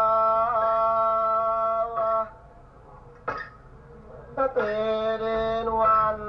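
Music with a sung voice: a long held note with a slight waver until about two seconds in, a pause with a brief sound, then another long held note from about four and a half seconds.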